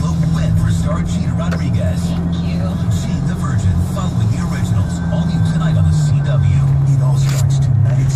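Car engine and road drone heard inside the cabin while driving, a steady low hum that drops slightly in pitch about six seconds in, under a voice and faint music.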